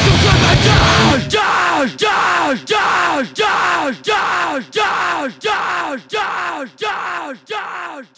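Hardcore punk band playing, then cutting out about a second in. What is left is a short shouted vocal sound with a falling pitch, repeated in a loop about ten times, roughly every two-thirds of a second, and slowly fading.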